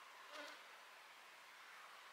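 Near silence with a faint steady hiss, broken by a short buzz of a flying insect passing close, about half a second in.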